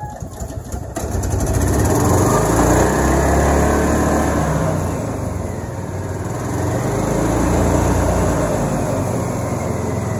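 John Deere Gator's gas engine being cold-started on choke: the starter-generator cranks it for about a second, then it catches and runs. The engine sound eases off around the middle and picks up again.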